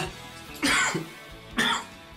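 A man coughing twice, about a second apart, over background music.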